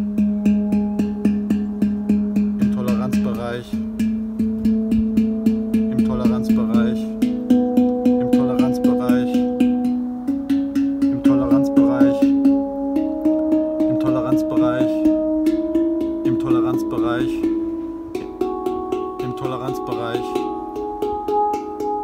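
Steel handpan with its tone fields tapped in quick repeated strokes, one note at a time, stepping up the scale through about seven notes, each ringing on. The instrument is tuned to 440 Hz and every note sits close to true pitch.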